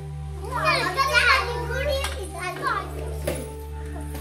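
Young children's voices talking and calling out excitedly while they play, over steady background music with a held drone. A single sharp click comes about three seconds in.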